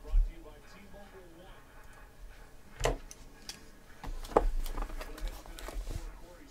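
Cardboard shipping case being handled: a sharp knock about three seconds in, then a run of knocks and scuffs over the last two seconds as it is picked up and turned in the hands.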